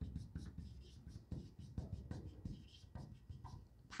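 Faint, irregular strokes of a marker writing on a whiteboard.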